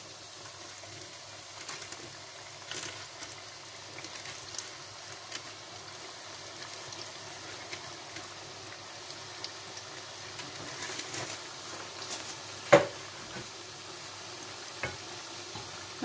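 Chebakia (Moroccan sesame pastry) dough deep-frying in a pan of hot oil: a steady sizzle of bubbling oil, with one sharp tap about three-quarters of the way through.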